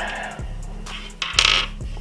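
Background music, with a short clatter of small hard plastic parts being handled on a tabletop a little past the middle: the lavalier microphone's clip and cable being set down and picked up.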